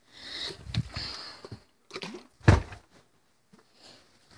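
Rustling and handling noise, then a small knock and a single loud, dull thump about two and a half seconds in.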